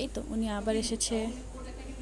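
A voice speaking for about the first second, then a steady low background hum.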